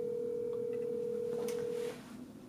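Phone ringback tone over the speakerphone: a single steady ring of about two seconds that cuts off sharply, while the outgoing call waits to be answered.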